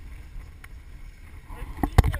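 Wind rumbling on a helmet camera's microphone, with a few sharp knocks near the end as the noise starts to build.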